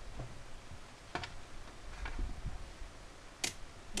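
Two sharp clicks, about a second in and again near the end, over faint low handling rumble: tools and multimeter test leads being handled on a workbench.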